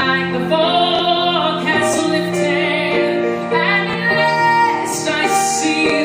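A woman singing a slow ballad live into a microphone over musical accompaniment, holding long notes with vibrato.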